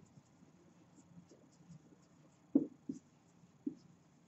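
Marker pen writing on a whiteboard: faint strokes, with three short louder ones in the second half.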